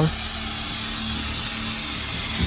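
Steady mechanical hum of background machinery with a faint, constant low tone.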